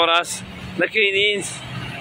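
Car driving past on a city street, a low engine and tyre rumble heard between short spoken phrases.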